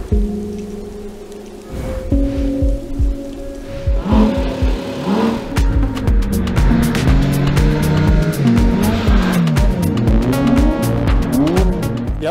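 Background music with a beat. From about four seconds in, Porsche Cayman GT4 RS flat-six engines rev up and fall back again and again over it as the cars slide around an ice track.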